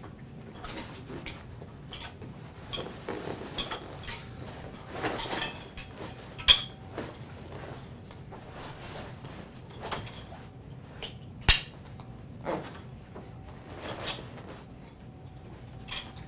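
A padded wheelchair backrest being fitted and strapped onto a wheelchair: scuffing and rustling of the back and its straps with scattered clicks, the two loudest and sharpest about six and a half and eleven and a half seconds in, as the strap buckles are fastened.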